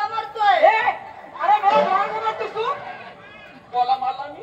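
Speech only: spoken voices with overlapping chatter, pausing briefly near the end.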